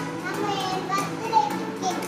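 Small children's voices chattering, with background music.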